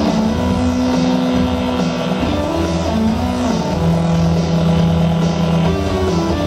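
A live rock band playing, led by an electric guitar holding long sustained notes: one held note, a bend through the middle, then a lower note held to near the end, over steady drums and cymbals.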